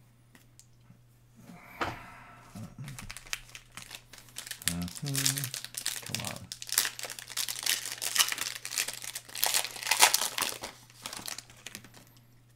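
The foil wrapper of a Panini Mosaic football card pack being torn open and crinkled by hand: a dense run of crackling that starts about two seconds in and gets loudest near the end.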